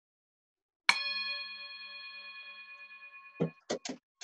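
A singing bowl struck once with a wooden spoon about a second in. It rings with several steady tones that waver about four times a second and slowly fade. A few short bursts of sound come near the end.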